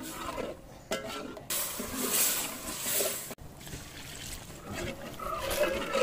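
Thick curry simmering in an aluminium pot over a wood fire, with a ladle stirring through it. The sound cuts off abruptly a little past halfway and then resumes more quietly.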